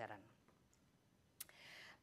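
Near silence in a pause between spoken sentences, broken by a single sharp click about one and a half seconds in, followed by a faint hiss just before speech resumes.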